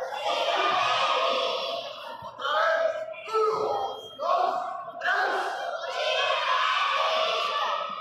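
A group of judo students shouting together in long, drawn-out calls, with many voices at once and short breaks between the shouts.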